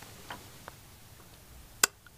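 Quiet room with a few faint light ticks as a tarot card is handled, then one sharp click near the end.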